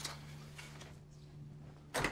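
Faint, quiet background with a steady low hum.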